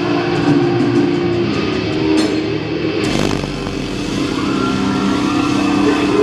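Metalcore band playing live at loud volume, with distorted electric guitars holding sustained chords. About three seconds in, a heavy bass rumble comes in that overloads the recording.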